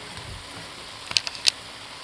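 Chicken and red wine sizzling faintly in a wok, with a few sharp taps of a wooden spatula against the pan a little over a second in.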